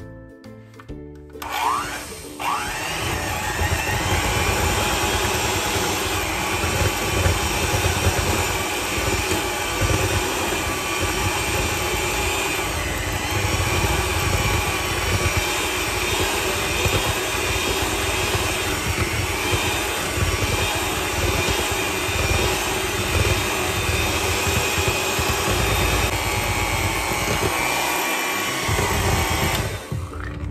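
Electric hand mixer switched on about a second and a half in, its beaters churning cream cheese and mascarpone in a glass bowl with a steady motor whir, until it stops near the end.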